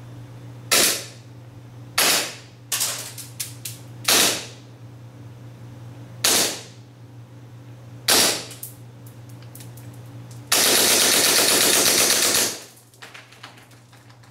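WE G18C gas blowback airsoft pistol with a steel slide firing through a chronograph during an FPS test. About six single sharp shots come one to two seconds apart, then a full-auto burst of about two seconds near the end.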